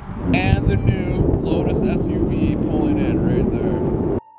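Voices talking, not clear enough to make out words, over a steady low rumble.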